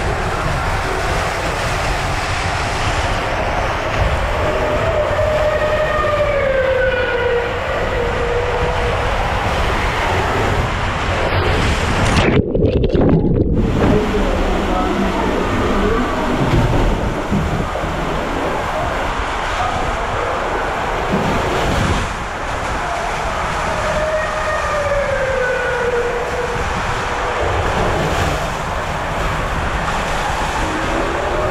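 Rider sliding down an enclosed water slide tube: loud, steady rushing of water and the slide's rumble, echoing in the tube. It goes briefly muffled just before the middle. Twice a falling, wailing tone sounds over the rush.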